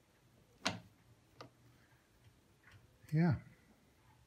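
Sharp metallic clicks from a Boxford AUD metal lathe's carriage controls worked by hand: a loud click under a second in, a lighter one about a second in, and a faint one later.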